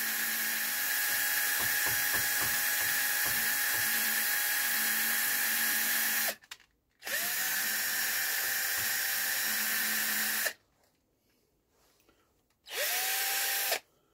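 Cordless drill running in three goes, spinning a brass carburettor float needle against its brass seat with valve grinding paste to lap the two together. A long first run of about six seconds, a short pause, a second run of about three and a half seconds, a stretch of near silence, then one brief run near the end.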